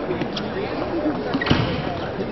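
Table tennis ball strokes in a fast doubles rally: a sharp click about half a second in, then a louder, sudden knock about a second and a half in, over a background of voices.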